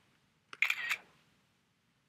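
Mac OS X screenshot sound: the synthesized camera-shutter click plays once, briefly, about half a second in, marking that a screenshot has just been taken.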